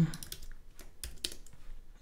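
Computer keyboard being typed on: a quick, uneven run of key clicks as a line of code is entered.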